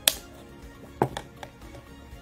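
Light clicks and taps of a plastic cup being handled as string is tied to it: a sharp click at the start and another about a second in, with a few softer ones after. Quiet background music plays underneath.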